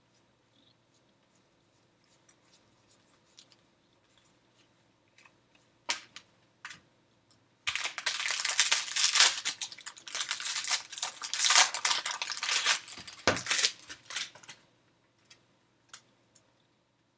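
Silver foil wrapper of a 2018 Topps Series 1 jumbo baseball-card pack crinkling and tearing as it is ripped open, starting about halfway in and going on for about seven seconds. Before it come only a few faint clicks of cards being handled.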